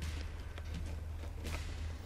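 Faint handling sounds: a few light clicks as a rigid plastic mounting plate is pushed into the fabric slots on the bottom of a pack, over a low steady hum.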